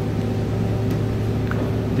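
Steady low machine hum of workshop equipment running, with a faint click about one and a half seconds in.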